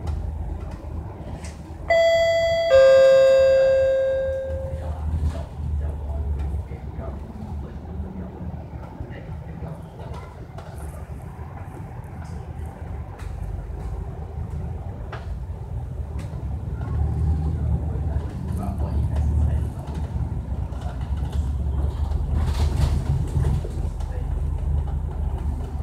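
Bus stop-request bell: a two-note ding-dong chime, a higher note then a lower one that rings out, about two seconds in. Under it the MAN double-deck bus runs on with a steady low engine and road rumble that grows louder in the second half.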